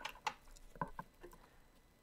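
A small deck of oracle cards being handled and shuffled in the hands: a quick run of light card taps and flicks, thinning out about halfway through.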